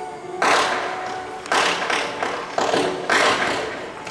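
Firecrackers going off: a series of sharp bangs over about three seconds, each with a short fading tail.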